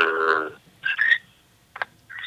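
A man's voice over a telephone line holds a croaky, stammering syllable that breaks off about half a second in. A few short bursts of laughter follow, and a click near the end.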